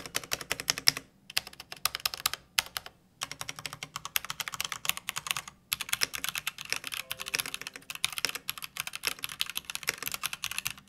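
Typing on a Varmilo VA-87M tenkeyless keyboard with EC Sakura electro-capacitive switches: a fast, dense run of keystrokes broken by a few short pauses.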